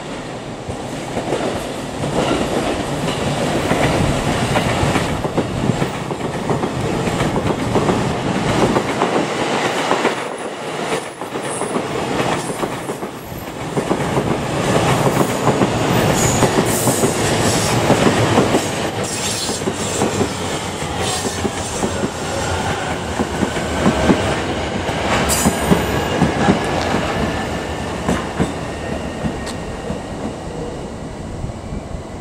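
A 15-car JR East Tokaido Line local train, E233 series cars in front and E231 series at the rear, running into the station close by: wheels clattering over rail joints and points. A high whine falls in pitch partway through as the train slows to arrive.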